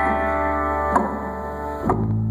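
Solo guitar playing chords between sung lines, the notes ringing on, with a fresh strum about a second in and another near the end.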